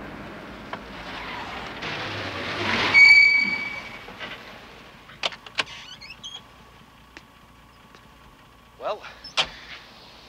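A vintage car drives up and stops: its engine and road noise swell for about three seconds, then a brief high squeal as it pulls up. A few sharp clicks follow.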